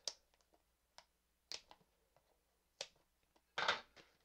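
Hands handling Pokémon trading-card packaging: a few faint clicks spaced about a second apart, then a short louder rustle near the end.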